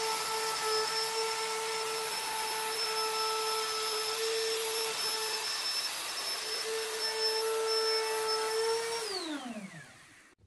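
Handheld plunge router running at a steady high speed as it is pushed along a radius-jig sled, cutting a 10-inch radius into a Blackwood Tek fretboard. About nine seconds in it is switched off and its pitch falls as the motor winds down.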